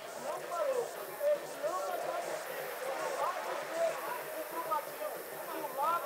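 Distant voices of players and bench staff shouting and calling across an open football pitch: scattered short calls and complaints over an outdoor hum, with no close voice.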